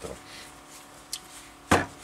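A boxed filter cartridge set down on a wooden bench: one sharp knock near the end, with a small click shortly before it.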